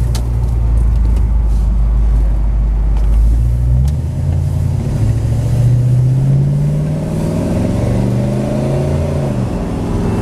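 The 1972 Chevelle SS's engine heard from inside the cabin, running steadily at low revs, then accelerating from about four seconds in with its pitch rising for several seconds before it drops back near the end.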